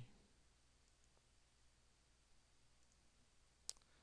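Near silence, with a single computer mouse click near the end.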